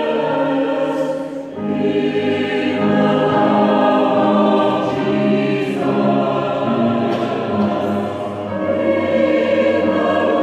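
Mixed-voice Salvation Army songster choir singing a hymn arrangement in parts, holding sustained phrases. There is a short break between phrases about one and a half seconds in and again near the end.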